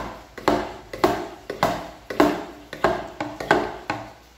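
Small plastic hand-pump pressure sprayer being pumped, its plunger knocking in short, even strokes about twice a second to pressurise the bottle.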